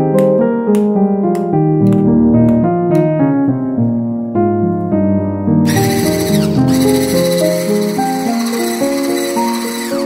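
Solo piano music plays throughout. About six seconds in, an electric hand mixer with a wire whisk starts whipping cream in a bowl, running steadily as a high hiss-like whine for about four seconds before cutting off.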